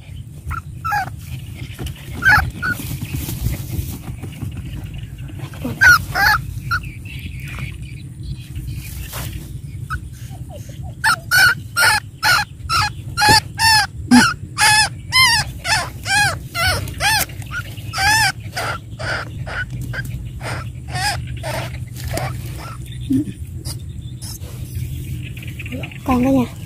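Dog barking repeatedly at a rat burrow being dug out: a few scattered barks, then a quick run of sharp barks about eleven seconds in, two to three a second for several seconds, before they thin out.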